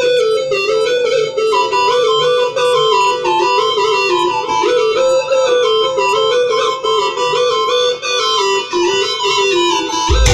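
Music: a single synthesizer melody line of quick stepping notes, played back from a home-produced rumba track, with no bass or drums under it.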